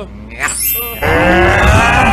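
A few short vocal sounds, then a man's loud, drawn-out bellow that starts suddenly about a second in and slowly falls in pitch.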